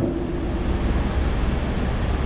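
Steady rushing noise with a low rumble: the room's background noise picked up through the lecture microphone.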